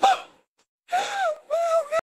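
A voice making wordless vocal sounds with no words. There is a short cut-off sound at the start, then about half a second of silence, then two drawn-out, wavering gasp-like cries.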